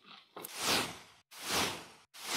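Two whoosh sound effects in quick succession, each a rush of noise that sweeps down in pitch and fades away.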